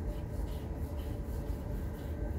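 Steady low machine hum with a few faint, even tones above it, with no sudden events.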